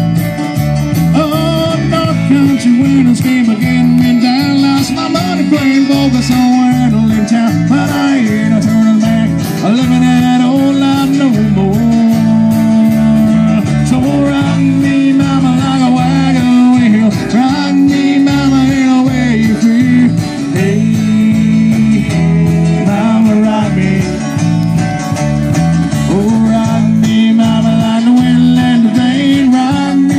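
Live band playing loudly and continuously: acoustic guitar, electric bass, electric guitar and a drum kit.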